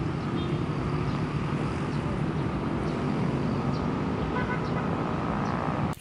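Steady outdoor background noise, a low rumble like distant road traffic, with a few faint short high tones. It cuts off abruptly near the end.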